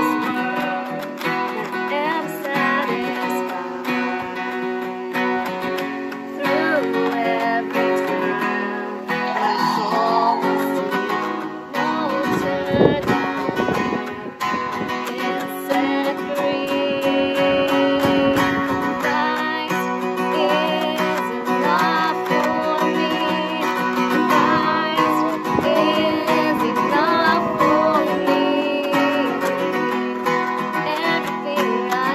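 Acoustic guitar strummed steadily, accompanying a woman singing a worship song.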